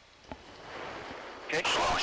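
Hiss of an open radio channel, swelling about half a second in, then a loud burst of static near the end as a voice keys in with a short "okay".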